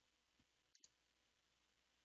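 Near silence: room tone, with one or two faint mouse clicks about halfway through.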